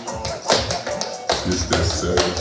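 Tap shoes striking a laminate floor in a run of quick, irregularly spaced taps, over a slowed-down hip-hop track with a heavy bass line.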